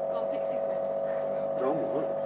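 A small subwoofer submerged in a bowl of water, driven hard by an amplifier, gives a steady buzzing tone at one constant pitch.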